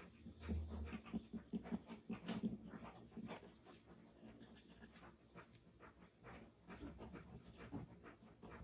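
Charcoal pencil scratching on paper in short, quick shading strokes. For about two seconds near the start, a louder, rhythmic low pulsing sound runs under the strokes.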